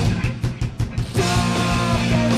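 Live rock band playing electric guitar, bass guitar and drum kit. The band drops to a few short, separated hits for about half a second, then comes back in full about a second in with sustained notes.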